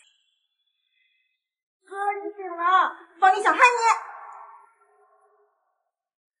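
A silent gap, then a high-pitched voice making two short wordless vocal sounds, rising and falling in pitch, lasting about three seconds in all.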